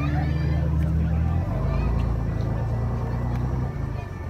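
A vehicle engine running as a loud low hum, its pitch shifting down about one and a half seconds in and dropping away just before the end.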